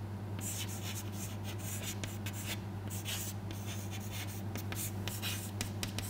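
Chalk writing on a chalkboard: a run of short scratching strokes as an equation is written, over a steady low hum.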